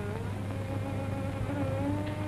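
Steady low hum and hiss of an old film soundtrack, with faint held background-score notes that drift slowly in pitch.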